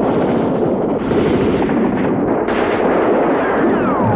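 Battle sounds of continuous gunfire and explosions, dense and unbroken, with a descending whistle near the end.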